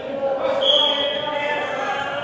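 A referee's whistle blown once, a short steady high blast about half a second in, signalling the start of a wrestling bout. Gym voices carry on underneath.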